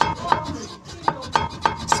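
Quick, regular metallic knocks, about three to four a second, each with a short ring, as a Volvo XC70's front wheel is shaken by hand: play in the front suspension that the mechanic suspects is a worn lower ball joint.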